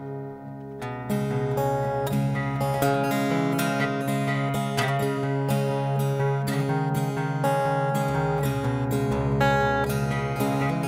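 Acoustic guitar instrumental intro: a chord rings and fades, then from about a second in the guitar plays a steady rhythmic strummed pattern of chords.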